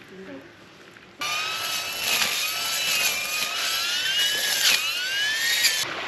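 Makita cordless string trimmer running, its electric motor giving a high whine that wavers and glides upward in pitch as it cuts grass. The whine starts suddenly about a second in and cuts off just before the end.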